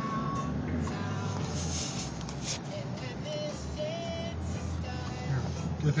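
Steady low rumble of a car driving, heard from inside the cabin, with music playing along with it.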